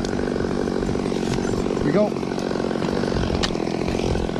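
Chainsaw idling steadily, a constant engine drone with no revving.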